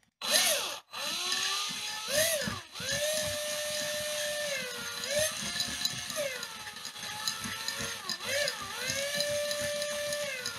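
Cordless drill motor whining as it spins a mesh basket of watch parts in a mason jar of cleaning solution, washing the parts. It starts, stops for a moment, then runs on, its pitch dipping and rising several times as the trigger is eased off and squeezed again.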